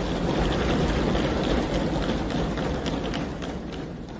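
A crowd of assembly members applauding with many hands clapping and thumping on their desks, a dense burst of claps and knocks that swells in at the start and dies away near the end.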